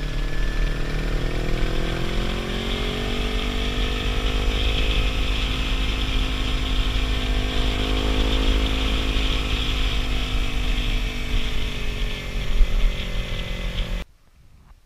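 Motorcycle engine running under way, its pitch rising steadily over the first few seconds, holding, then easing down near the end, with wind rushing over the microphone throughout.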